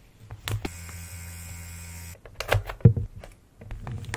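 Hands handling paper and plastic packaging. A steady buzzing hum starts about half a second in and cuts off suddenly about a second and a half later. Then comes a cluster of crinkles and taps, the loudest a thump near the three-second mark.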